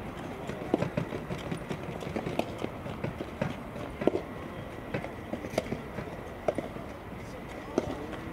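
Soft tennis rally: a rubber soft-tennis ball struck back and forth by rackets, with short sharp pops of hits and bounces every second or so, the loudest a little after 4 s, and the players' footsteps on the court.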